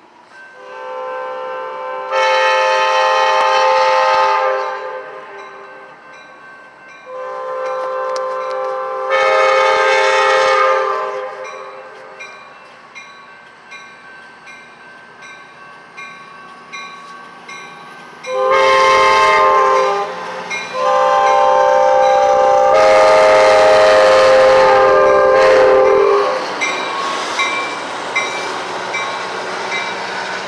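Amtrak train's air horn sounding the long, long, short, long grade-crossing signal as it approaches, with the train rumbling through the crossing near the end. Faint, evenly repeated chirps come from the crossing's electronic bell, which is broken.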